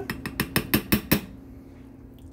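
Metal spoon clicking against a glass baking dish while spreading a thick corn and cream-cheese mixture: a quick run of about eight sharp clicks in the first second or so, then quiet.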